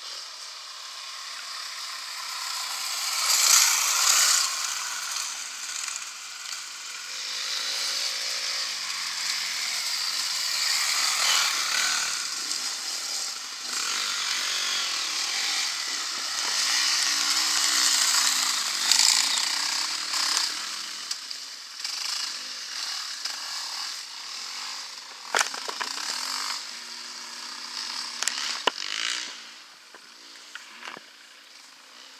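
Enduro dirt bike engines running at high revs, the buzz swelling and fading as the bikes pass, loudest about three to four seconds in and again around eighteen seconds. A few sharp clicks near the end.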